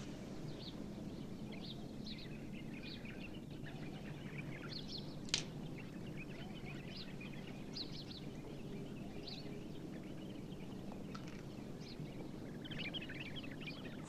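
Faint, scattered bird chirps over a steady background hiss and low hum, with one sharp click about five seconds in.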